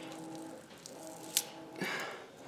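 Faint dry crackling of French marigold seed heads being pulled apart between the fingers, with one sharp click a little past halfway. Faint steady tones sit underneath.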